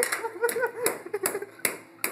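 People laughing, followed by a few sharp taps evenly spaced about half a second apart.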